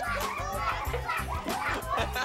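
A crowd of young children's voices, shouting and chattering at play, over background music with a repeating bass line.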